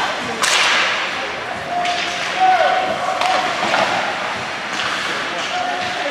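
Ice hockey play in an echoing rink: about four sharp cracks of sticks and puck against the ice and boards, a second or so apart, each ringing out in the arena.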